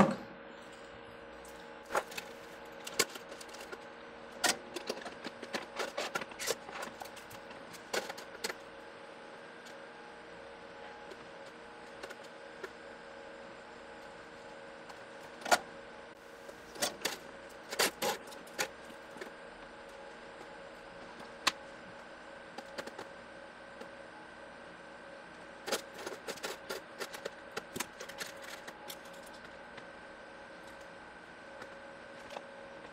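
Scattered small clicks and taps from handling a printed circuit board with freshly mounted resistors on a wooden desk, and from the solder wire and soldering iron brought to its pads. The clicks come in irregular clusters over a faint steady hum.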